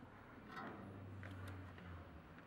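Faint background noise with a low steady hum and a few faint ticks.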